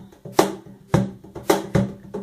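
A cajón played with the hands: four strikes about half a second apart, the last two closer together, in a simple steady beat.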